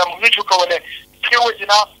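Speech only: a man talking in a telephone interview, his voice coming over a phone line.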